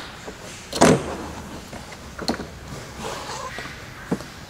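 Handling noise: a short rustling thump about a second in, a sharp click a little after two seconds, and faint rustling and knocks between, as the camera is moved about.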